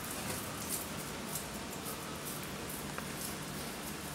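Faint, soft squishing of raw ground-meat mixture being rolled into a meatball between bare hands, with a few small ticks over a steady low room hum.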